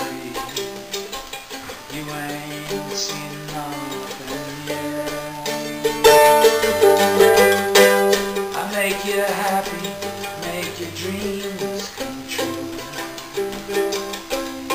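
Mandolin strummed in a slow, steady rhythm, the chords changing every second or two.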